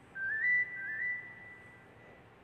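A high whistle-like tone in two short phrases, each climbing in small steps to a held note. The first is loudest, and the second is held longer before it fades.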